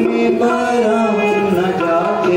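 Devotional chant sung by a single voice in long, steady held notes that step from one pitch to the next.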